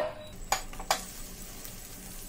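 Two light knocks as a block of butter is pushed off a plate into a hot nonstick frying pan with a wooden spatula, then the butter's faint sizzle as it starts to melt.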